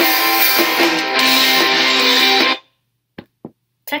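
Recorded pop song with guitar played back from an iPod, cutting off abruptly about two and a half seconds in as the playback stalls. Two short clicks follow.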